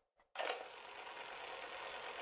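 Cassette deck sound effect: a click about a third of a second in as play engages, then a faint steady hiss of the tape running.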